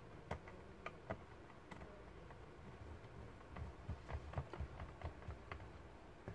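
Small screwdriver clicking and ticking on the screws of a metal laptop hard-drive caddy in its bay, the screws being turned in; light, irregular clicks, a few at first and a quicker run in the second half.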